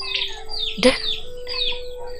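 Birds chirping over and over, a quick falling chirp about three times a second, over a low held tone that steps up in pitch. A single brief sharp sound comes a little before the middle.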